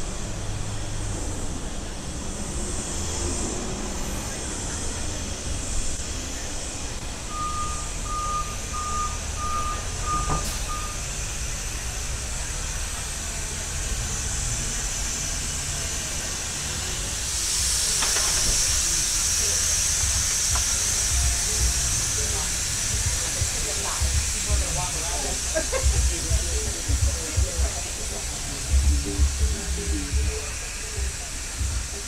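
City street ambience with passing traffic. About a quarter of the way in, a run of about seven evenly spaced electronic beeps, like a vehicle's reversing alarm, lasts a few seconds. About halfway, a steady high hiss sets in, and near the end come uneven low knocks and rattles.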